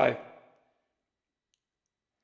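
A man's speaking voice trails off in the first half second, followed by silence, broken only by a faint tick about one and a half seconds in.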